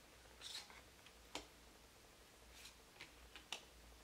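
Faint handling of tarot cards: a couple of soft swishes as cards slide over one another and a few light clicks as they are set down on the pile.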